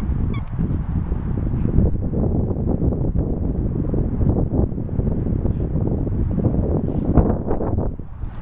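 Heavy low rumble of wind and handling noise on a handheld microphone outdoors. A brief high chirp comes about a third of a second in, and a burst of rustling about seven seconds in.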